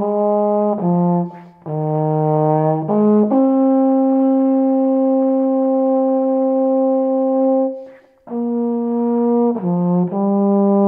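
Solo tenor brass horn (euphonium-style, silver, three valves) playing a melody alone: a few short notes, a breath, more notes, then a long held note of about four and a half seconds, a quick breath, and the phrase going on with short notes near the end.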